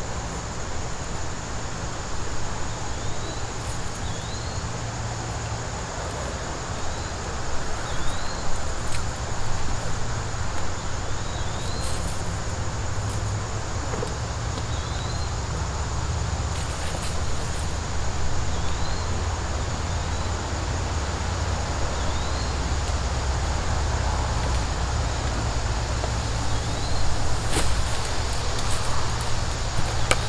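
Outdoor background: a steady low rumble under a steady high insect drone, with a short rising chirp repeating every second or two and a few faint clicks.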